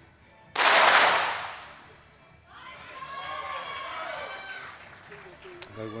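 A burst of .22 rimfire target pistol shots from the line of finalists firing almost together, about half a second in. It is the loudest sound here and rings out over about a second.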